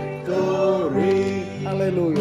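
A man singing a slow gospel hymn over instrumental accompaniment, holding long notes and gliding between them.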